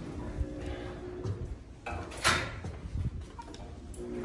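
A steady mechanical hum that stops about a second in, then one loud, sharp metallic clunk near the middle.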